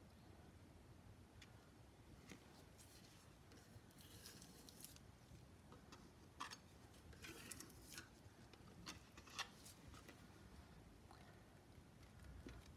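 Near silence, with a few faint scrapes and soft clicks of a small palette knife working acrylic pour paint onto a card.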